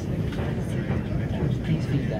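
Steady low rumble of a vehicle in motion, heard from inside as it crosses a bridge, with people talking faintly.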